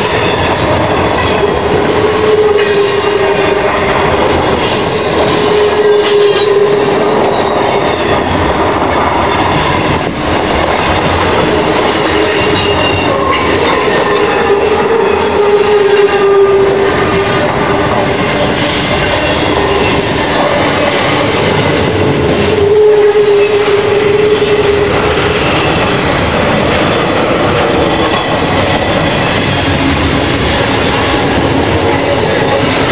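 Container freight train rolling past, a loud, continuous rumble of wagons with clickety-clack from the wheels. A squealing tone from the wheels swells and fades several times.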